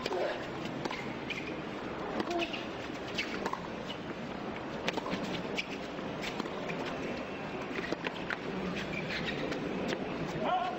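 Tennis rally: a racket striking the ball with a sharp pop every second or so, the serve first, over steady stadium crowd ambience.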